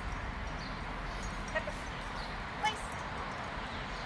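A bluetick coonhound giving two short, high whimpers over steady outdoor background noise. The second whimper is the louder.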